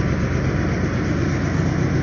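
Ford 302 (5.0 L) V8 of a 1994 F-150 idling steadily at a cold idle just after starting, heard from behind the truck at the tailpipe.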